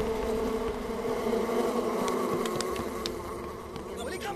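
A large swarm of bees buzzing in a steady drone, easing slightly near the end.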